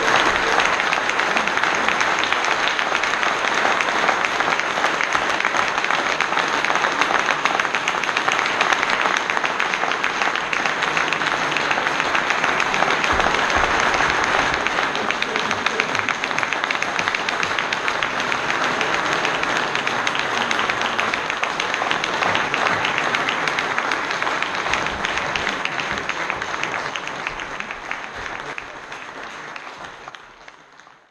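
Concert audience applauding, a dense, sustained clapping that fades away near the end.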